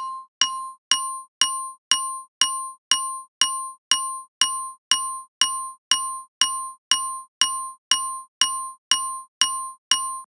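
A single glockenspiel note on a loop, struck about twice a second, each strike ringing briefly. It plays through a band-pass EQ that keeps the higher in-between overtones, giving it a thin, metallic character.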